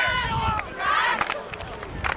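Players and spectators on a football sideline shouting and calling out, one voice held for about half a second at the start, then scattered calls.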